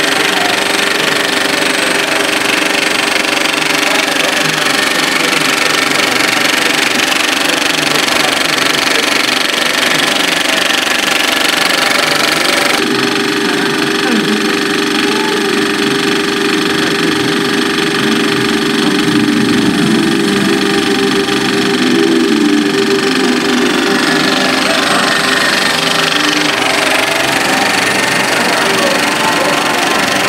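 Cinemeccanica Victoria 8 70mm film projector running, a steady mechanical clatter of its film transport. About halfway through the sound changes abruptly and the film's soundtrack, voices and music, is heard over it.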